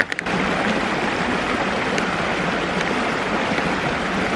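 Shallow stream running over rock, a steady rushing wash of water, with a brief click or two right at the start.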